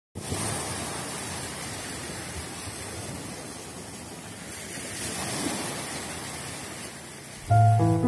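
Sea surf washing steadily onto the shore, swelling a little midway. Near the end, music with sustained keyboard notes starts abruptly and much louder.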